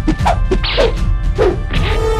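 Fight sound effects: a quick string of whooshes and punch-like whacks, about five in two seconds, several falling in pitch, over background music.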